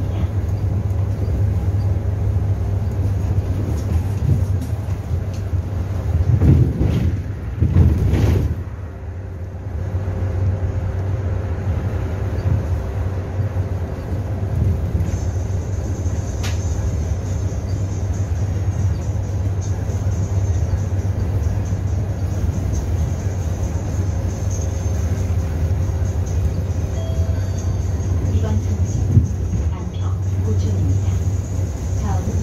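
Cabin noise of a natural-gas (CNG) city bus on the move: a steady low engine and road drone. It swells briefly about six to eight seconds in, then dips for a moment.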